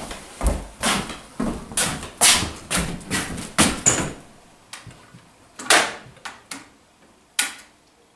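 Footsteps on a bare floor, about two a second, for the first few seconds. Then a few separate sharp knocks as a long wooden stick is poked up at a wall-mounted fuse box to knock out a screw-in plug fuse and cut the power.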